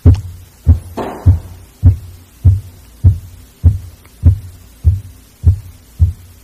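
A regular series of low thumps, about one every 0.6 seconds, ten in all, with a short rustle or breath about a second in.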